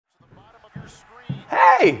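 Two footsteps thudding on a hard floor, about half a second apart, then a loud, drawn-out shouted "Hey!" falling in pitch near the end.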